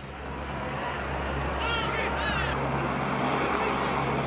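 Match ambience of a televised football game: a steady wash of stadium noise with a low hum underneath, and two short high-pitched shouts about two seconds in.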